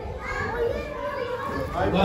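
Chatter of many voices talking over one another, with children's voices among them.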